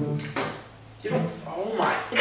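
A man's wordless, drawn-out groans of discomfort from the burning of Icy Hot on his skin. There is a single sharp knock about a third of a second in.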